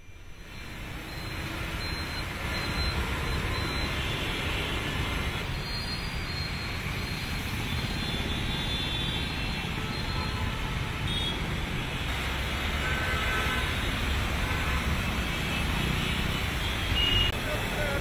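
Road traffic on flooded city streets: vehicle engines under a steady wash of noise, fading in over the first second or two.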